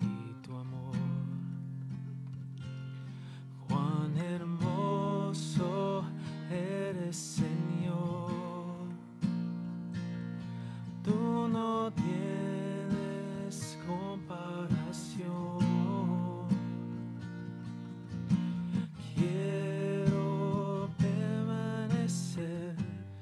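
Acoustic guitar strummed, accompanying a hymn. From about four seconds in, a voice sings the melody over it.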